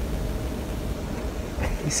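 Steady low hum inside a parked car's cabin, with a voice starting near the end.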